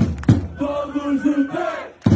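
Crowd of Portugal football supporters chanting in unison, with a couple of sharp hand claps near the start and then a long drawn-out sung line.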